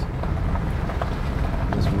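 A car driving along a rough concrete lane, heard from inside the cabin: a steady low rumble of the tyres on the rough surface.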